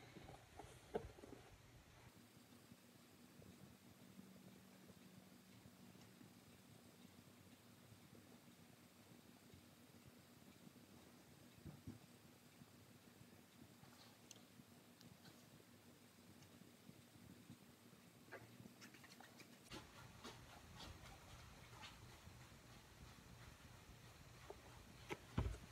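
Near silence: room tone with a faint steady hum and a few soft ticks, more of them in the last few seconds.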